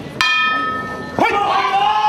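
A ring bell struck once, a quarter second in, to start the round, its tone ringing on and fading slowly. About a second in, a voice shouts over the ringing.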